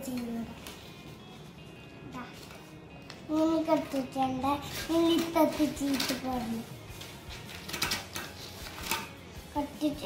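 A young child's voice for a few seconds in the middle, then a few sharp snips of scissors cutting through paper near the end.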